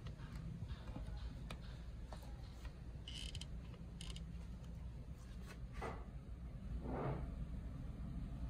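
Spring-loaded charger clamps being clipped onto a 12 V lead-acid battery's terminals: a few faint clicks and rattles over a low steady hum.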